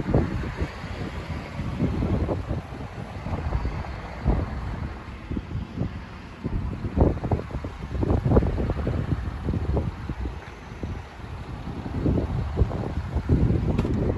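Wind buffeting the camera microphone: an uneven low rumble with irregular thumps and gusts, swelling and easing throughout.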